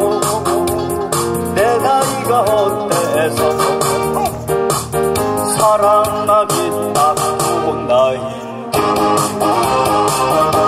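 A man singing a Korean trot song live into a microphone over a recorded accompaniment, heard through a PA system.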